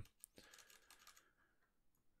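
A few faint computer keyboard keystrokes in the first half second, as lines of code are deleted in the editor.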